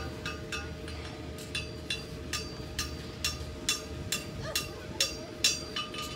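Sharp clinks with a short ring, repeating evenly about twice a second, over a steady tone.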